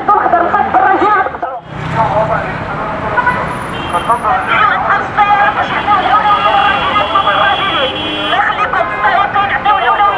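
City street traffic at a busy crossing: vehicles running and waiting, with people's voices in the background. A man's voice is close at the start, and a high steady tone sounds for a couple of seconds in the second half.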